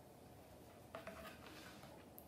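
Near silence: quiet room tone, with one faint, brief handling sound about a second in.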